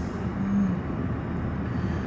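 Steady engine and road noise inside a moving vehicle's cabin: a low, even rumble with no sharp events.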